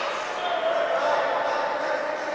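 Voices calling out across an indoor ice hockey rink, echoing in the large hall, with a few light knocks from play on the ice.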